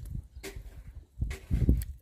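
Kitchen knife cutting and scraping a cooked sea snail's flesh inside its shell, with sharp clicks about half a second in and near the end, over a low rumble.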